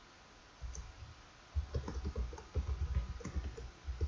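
Typing on a computer keyboard: a few keystrokes about half a second in, then a quick run of keystrokes from about one and a half seconds until near the end.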